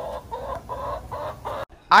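A domestic hen clucking in a run of short calls, about three or four a second, cut off suddenly near the end.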